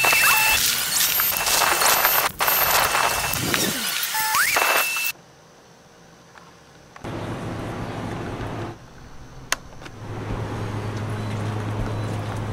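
Loud electronic static hiss with steady high beep tones and a few short pitch glides, which cuts off suddenly about five seconds in. After a quiet gap comes a softer patch of hiss, a single click, and from about ten seconds in a low steady hum with background noise.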